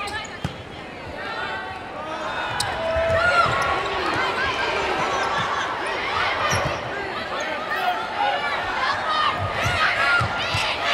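Sounds of a volleyball rally on an indoor hardwood court: dull thuds of ball contacts and many short squeals of sneakers on the floor. Arena crowd noise grows louder over the first few seconds as the rally goes on.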